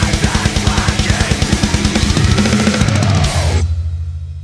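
Pearl drum kit played hard over a metalcore backing track, with a fast, even kick-drum beat and crashing cymbals. About three and a half seconds in the song ends on a final hit, leaving a low note ringing and fading.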